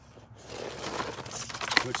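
A small RC rock crawler tumbling off a rock ledge onto pine straw and grass: a rustling, scraping clatter with a sharp knock near the end as it lands upside down.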